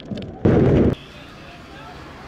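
A stun grenade going off: one loud bang about half a second in that is cut off short after half a second. Quieter crowd noise follows.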